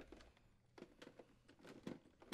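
Near silence, with a few faint plastic clicks as the tabs of a refrigerator dispenser's user interface panel are released with a small flathead screwdriver and the panel is lifted off, the clearest click near the end.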